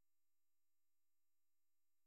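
Near silence: a digitally quiet pause with no audible sound.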